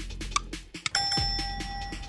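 Game-show sound effects: a ticking countdown beat, then about halfway a steady electronic bell tone that rings for about a second, the cue that a contestant has raised the flag to answer.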